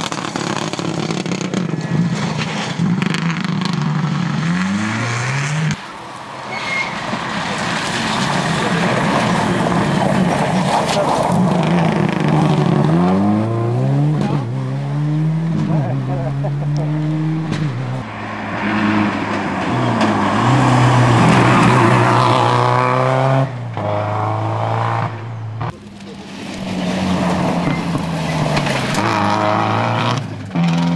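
Subaru Impreza rally car's flat-four engine driven hard through corners: the revs climb and drop again and again as it shifts gears and lifts off. The sound breaks off abruptly a few times and picks up on another pass.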